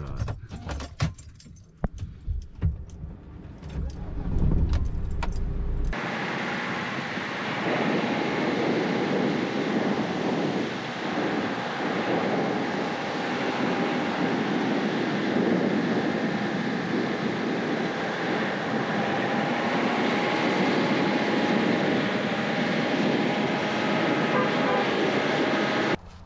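Clicks and rattles inside the Mercedes van's cab. About six seconds in, the sound changes sharply to a steady rush of wind and vehicle noise as the van drives along hard beach sand, heard from a camera mounted outside the van.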